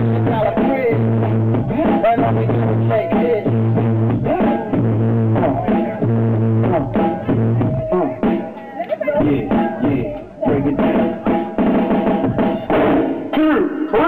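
Drum-heavy hip-hop/funk records played on DJ turntables, with a kick-and-snare beat and a short repeating bass figure. About eight seconds in the music breaks up and briefly dips, then a new groove comes in. The sound is dull and muffled, a low-quality room recording.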